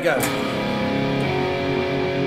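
Electric guitar playing a sus4 chord, picked near the start and left to ring.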